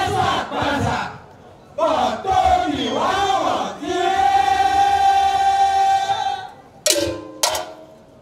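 A voice calling out in chanted shouts over a public-address system, with crowd voices. About four seconds in comes one long held call of about two and a half seconds, followed by two short sharp cries.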